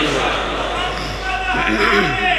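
A man's amplified voice in long, drawn-out chanted phrases, echoing heavily through loudspeakers in a large hall, over a steady low hum.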